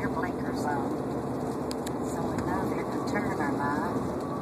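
Steady road and engine noise inside a Kia's cabin at highway speed, a constant rumble with a low hum. Faint talk runs over it, and there are a couple of brief clicks a little under two seconds in.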